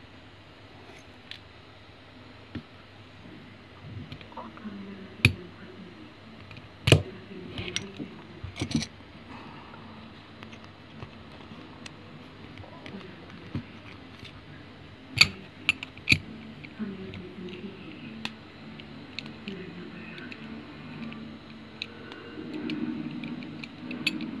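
Metal clicks and knocks from a steel padlock and a flathead screwdriver being worked into its keyhole. A handful of sharp single taps, with a cluster just past the middle.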